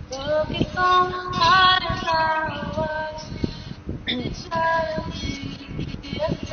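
A woman singing a slow melody with long held notes: one long phrase, then a shorter one about four and a half seconds in.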